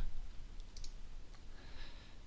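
A few faint computer mouse clicks, mostly a little under a second in, over low background noise.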